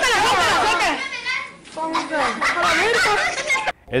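Schoolchildren's voices shouting and talking over one another, on a mobile phone recording. It cuts off abruptly near the end.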